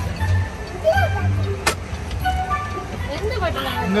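Jungle-themed ride soundtrack: background music with short chirping animal-call sound effects that thicken near the end, over the steady low rumble of the moving ride car. A single sharp click about two-thirds of the way through.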